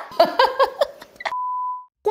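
A woman laughs briefly, then a single steady electronic beep tone sounds for about half a second and cuts off abruptly.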